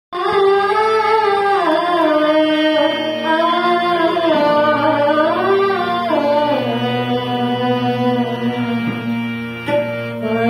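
A young girl singing the slow, gliding opening phrases of a Marathi devotional abhang, accompanied by harmonium, which holds a steady low note from about halfway through.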